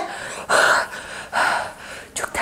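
A person's breathing: two short, breathy gasps or pants, about a second apart.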